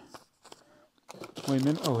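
A cardboard shipping box and its crumpled paper packing being handled, with a few brief crinkles and taps in the first second.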